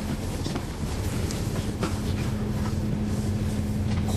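Cabin sound of a 2011 NABI 40-SFW transit bus running, its Cummins ISL9 inline-six diesel giving a steady, even hum. Scattered rattles and clicks come from the bus interior.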